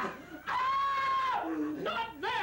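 A person's high-pitched shriek, held on one note for about a second. It is followed by a short lower vocal sound and a voice sliding upward near the end.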